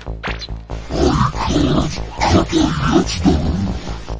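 Electronic background music with a steady beat. About a second in, a loud, rough, growl-like vocal sound comes in over the music and lasts about three seconds.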